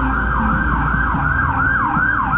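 An emergency-vehicle siren in fast yelp mode: a loud electronic wail sweeping up and down in pitch about three times a second.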